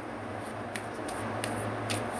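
Tarot cards being handled, with four or five soft card flicks over a steady low hum.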